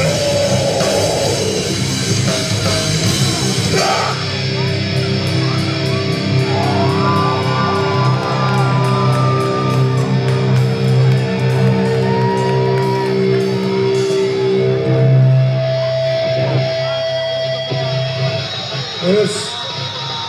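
Live heavy metal band playing loud through a PA in a large hall: distorted electric guitars, bass and drums. Long held notes and chords ring out through the middle and later part.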